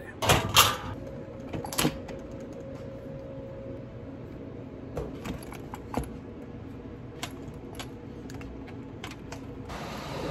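Handling noise: scattered small clicks, knocks and jingles of small objects as a black zippered fabric pouch is handled and its contents moved about, over a faint steady hum.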